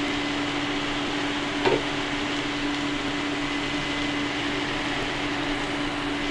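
Sliced bitter gourd and peanuts frying in an open pan: a steady sizzle over a constant hum, with one light knock about a second and a half in.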